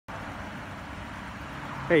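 Steady low hum and hiss of motor-vehicle noise. A man's voice comes in right at the end.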